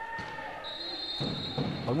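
Handball bouncing on the sports-hall court floor, a few dull thuds. A steady high-pitched tone comes in under a second in and holds.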